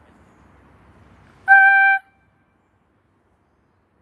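Steam whistle of a Harz narrow-gauge steam locomotive, one short blast of about half a second about one and a half seconds in, cutting off sharply: the warning whistle for the level crossing ahead.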